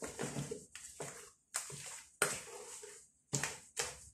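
A hand squishing and working thick puto batter in a large basin, in irregular strokes with short pauses between them.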